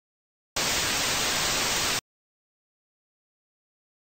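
Burst of analog TV static hiss, about a second and a half long, starting about half a second in and cutting off suddenly.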